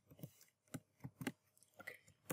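Faint computer keyboard keystrokes: a handful of separate, sharp clicks spaced irregularly across two seconds.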